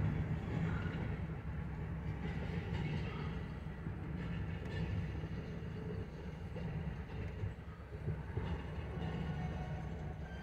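Freight boxcars rolling slowly past on the near track: a steady low rumble of wheels on rail with a few faint clicks, heard from inside a parked car.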